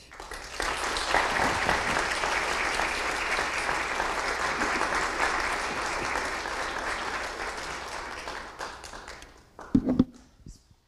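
Audience applauding at the end of a speech, starting about half a second in and dying away over the last couple of seconds. A short, loud thump comes just before the end.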